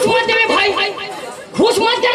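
Speech only: men talking into handheld stage microphones, amplified through the PA.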